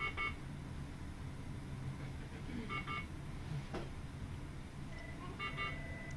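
Electronic beeping from a hospital patient monitor: a quick run of high beeps sounds three times, about every two and a half to three seconds, over a steady low equipment hum.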